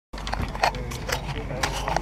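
Indistinct voices with irregular clicks and knocks over a steady low hum.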